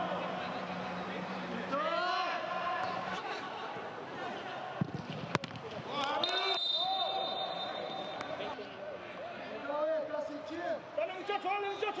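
Footballers shouting and calling to each other on the pitch, with two sharp kicks of the ball about five seconds in.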